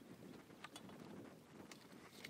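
Near silence: faint outdoor ambience with a few soft clicks, about two clicks before the middle and one near the end, from a Daiwa Luvias LT 3000D spinning reel being turned over in the hands.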